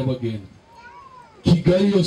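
A man's voice speaking in drawn-out, held syllables, breaking off about half a second in and starting again after a short pause.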